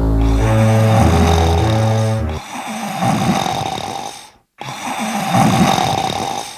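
Low bowed-string music, cello and double bass, plays for about the first two seconds; then a sleeping cartoon character snores twice, two long rasping snores with a brief silence between them.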